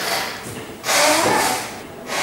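Chalk scratching on a blackboard as equations are written: a short stroke at the start and a longer, louder one about a second in. A man's voice is faintly heard under it.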